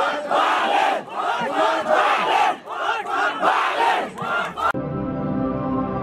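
A man shouting rhythmic campaign lines into a handheld microphone over a crowd, the voice rising and falling in repeated phrases. Near the end it cuts off abruptly and soft, sustained outro music begins.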